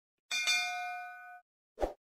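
Notification-bell sound effect: one bright ding that rings on in several steady tones for about a second. Near the end, a short soft pop.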